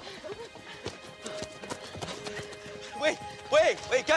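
Quick running footsteps on a dirt forest trail, then a few excited, voiced cries from the running teenagers near the end, over background music.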